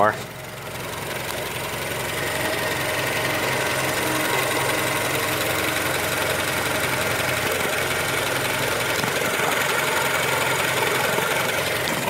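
JDM Honda R18A 1.8-litre inline-four idling steadily, warmed up to operating temperature and running smoothly. It grows louder over the first few seconds, then holds even.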